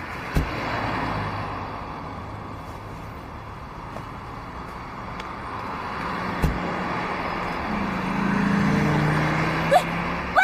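Street traffic going by, a car door shutting with a thump about six and a half seconds in, then a car engine getting louder near the end.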